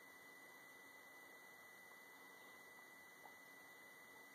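Near silence: faint hiss with a steady high-pitched whine.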